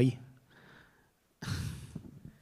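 A short, breathy sigh from a person, about one and a half seconds in.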